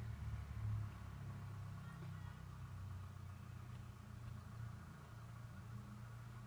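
Faint, steady low hum of the ice cream van's engine as it drives past in the street.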